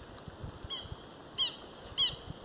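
A bird calling in the distance, short harsh call notes repeated about every two-thirds of a second, three times.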